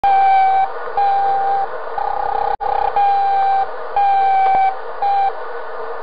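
Electronic beep at one steady pitch, repeating about once a second, each beep lasting well under a second, with one longer beep near the middle, over a faint hiss.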